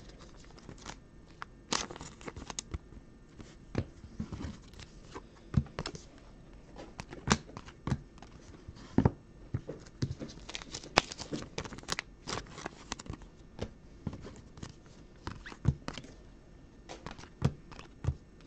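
Trading cards and thin plastic card sleeves being handled: irregular crinkling, rustling and light clicks and taps as cards are pulled from the pack, slid and set down.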